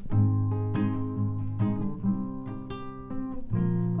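Two acoustic guitars playing the instrumental intro of a song: chords strummed about once a second and left ringing.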